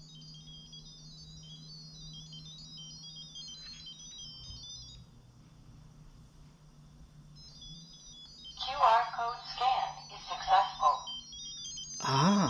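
A rapid run of short, high electronic beeps hopping between pitches, the pairing tones exchanged while the phone's QR code is shown to a light bulb camera during setup. It pauses for about two seconds in the middle and then resumes, with a brief voice-like sound under it near the end.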